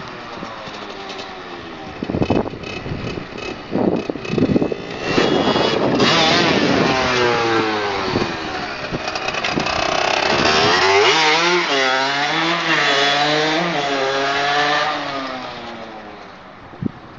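Small 50–70cc two-stroke dirt bike revving and accelerating close by, its pitch rising and falling again and again. There are a few short, sharp blips of the throttle about two to five seconds in, then sustained high revs that fade away near the end.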